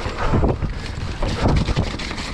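Wind buffeting a chest-mounted action camera's microphone as a YT Capra full-suspension mountain bike rolls fast down a dirt forest trail, with tyre rumble over the ground and frequent short rattles and knocks from the bike over roots and bumps.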